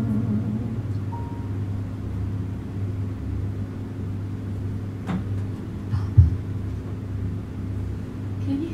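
Steady low hum and rumble of a small venue's room sound, with no singing or playing; a few faint clicks and one short thump about six seconds in.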